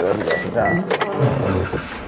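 A person's voice talking, with a couple of sharp clicks about a second in.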